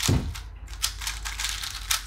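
Two 3x3 speed cubes, a GTS2 and an MF3RS2 M, being turned rapidly during a solve: a fast, dense run of small plastic clicks and clacks.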